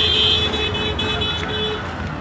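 A vehicle horn sounding one long steady note for about two seconds and stopping near the end, over low street rumble.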